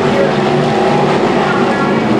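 A pack of IMCA Sportmod V8 race cars running together on a dirt oval, a loud, steady engine sound.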